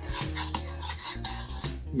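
A metal spoon scraping round a bowl again and again as it stirs a thick oil-and-spice paste.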